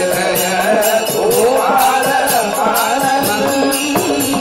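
Devotional bhajan music in Carnatic style: a wavering melodic line over a steady low drone, with high metallic percussion keeping an even beat.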